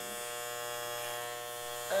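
Wahl electric hair clippers running with a steady buzz as the blade cuts hair at the side of the head, just above the ear.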